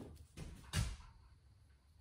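Two light metal knocks within the first second as lathe compound-rest parts are handled while the gib is being fitted.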